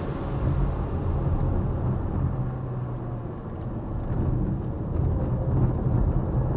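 Ford Focus Mk2 1.6 four-cylinder engine and road noise heard from inside the cabin while driving; the engine note eases off about three seconds in, then builds again near the end.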